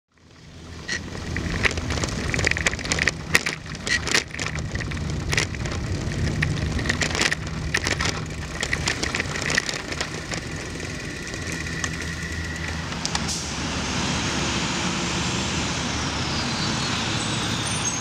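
City street traffic: motor vehicles running, with frequent sharp clicks and rattles through the first two-thirds. Near the end it turns into a steadier rush with a high whine that slowly falls in pitch.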